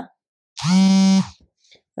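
A person's voice holding one drawn-out syllable at a steady pitch for about three quarters of a second, starting about half a second in.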